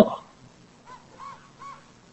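About four faint, short barks from a distance, each a brief yelp that rises and falls in pitch, coming just after a man's loud imitation 'woof' ends; the family took these barks for something mimicking a dog.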